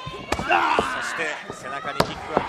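A few sharp smacks of a pro wrestling bout, blows landing or bodies hitting the ring, with a voice yelling between them.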